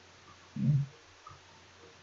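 A man's voice says "okay" once, briefly; the rest is quiet room tone.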